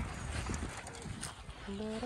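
Outdoor ambience with a low rumble of wind on the microphone and a few light clicks; near the end a tune of held notes that step up and down in pitch begins.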